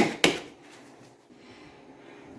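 Two quick pats of gloved hands on a ball of soft yeast dough in a plastic bowl at the very start, then quiet room tone.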